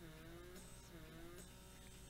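Faint steady hum of a handheld blackhead-removal suction device's small motor running while pressed against the skin, with two soft gliding tones in the first half.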